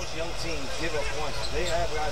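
Basketball game broadcast audio: a basketball bouncing on the hardwood court under steady arena crowd noise, with a play-by-play commentator talking faintly underneath.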